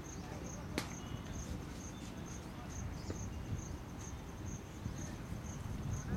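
An insect chirping steadily outdoors, a short high-pitched pulse repeating about twice a second, over a steady low rumble. One sharp click comes a little under a second in.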